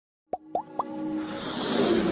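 Animated logo-intro sound effects: three quick pops, each rising in pitch, about a quarter second apart, then a whoosh that swells over a held tone.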